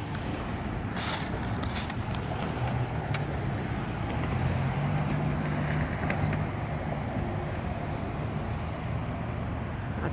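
Street traffic: a vehicle driving past, its low rumble swelling around the middle and easing off, over steady outdoor background noise.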